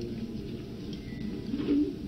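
A pause in a speech over a hall's microphones: faint low room hum from the sound system, with a weak low sound late in the pause.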